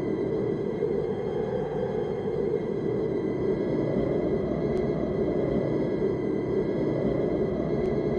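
Steady, dark, rumbling film-soundtrack drone with faint ominous music, holding level throughout.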